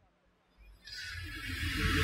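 Silence for about the first second, then a faint hiss with a low rumble that swells steadily, picked up close on a headset microphone: the preacher's breath and room noise during a pause in speaking.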